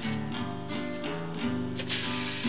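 Music: an acoustic guitar strumming chords, about two strums a second, with a sharp loud hit near the end as the song picks up.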